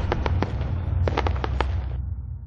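Sound-effect sting of a news logo intro: sharp crackles and pops like fireworks over a low rumble, a flurry of crackles about a second in, then the whole sting fading out.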